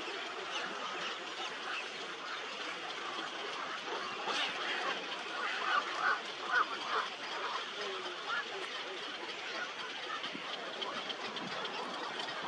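Dense chorus of many birds calling at a nesting colony of large waterbirds, continuous and overlapping, with a cluster of louder calls about six seconds in.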